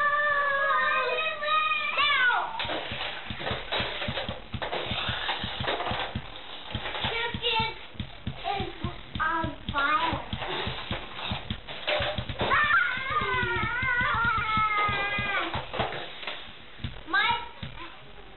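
Young children's voices singing and humming in long, held and gliding notes near the start and again about twelve seconds in, with scattered clicks and knocks in between.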